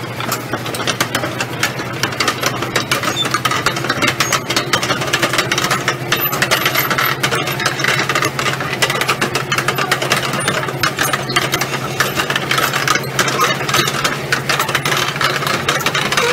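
Diesel engines of heavy piling-site machinery running steadily, a low hum under a dense, rapid clatter of knocks.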